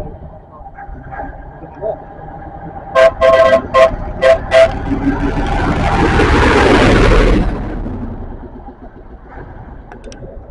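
Dennis fire engine giving a quick string of about six short horn toots as it comes up, then its engine passing close by, swelling to a loud peak and fading away.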